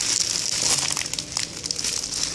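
Thin plastic wrapping film crinkling and crackling as wrapped booklets are handled and lifted, over a faint steady hum.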